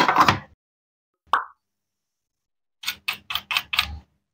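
Wooden toy play-food pieces and a wooden toy knife knocking on a small wooden cutting board: a cluster of clacks at the start, a single short knock about a second in, then a quick run of about five light taps near the end as the knife is set to a toy cucumber.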